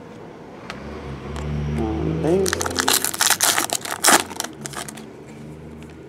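Foil trading-card pack wrapper being crinkled and torn open: dense, loud crackling for about two seconds in the middle, after a low steady hum.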